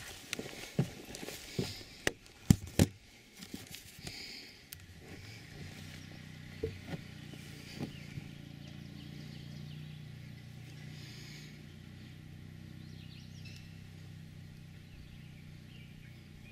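Handling noise from a camera being carried and set down: a run of knocks and bumps, the loudest two close together about two and a half seconds in, then a steady low hum.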